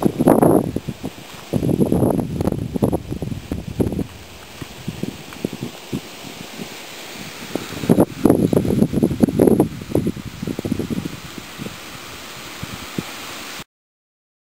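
Wind buffeting the camera microphone in irregular gusts, with a steadier hiss between them; the sound cuts off suddenly near the end.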